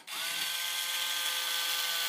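A 4 V lithium cordless electric screwdriver on a very low torque setting, driving a neck screw through a Fender Stratocaster's neck plate into the wooden neck. Its motor spins up quickly and then holds a steady whine.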